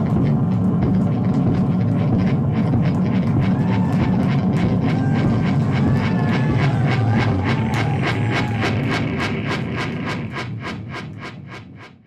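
Live experimental noise music from synthesizers, effects pedals and guitar: a dense, rumbling low drone under a fast, regular pulse of clicks, with warbling tones in the middle. It fades out over the last few seconds.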